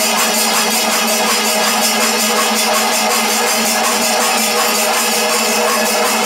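Kerala panchavadyam temple ensemble playing loudly: kombu, the long C-shaped brass horns, sound held tones over rapid, even clashing of ilathalam hand cymbals.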